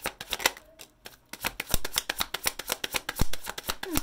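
A deck of tarot cards being shuffled by hand: a rapid run of card clicks and flicks, with a short lull about a second in before it picks up again.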